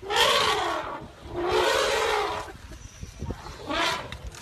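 African elephant trumpeting: two loud, long, rough calls, then a shorter one near the end.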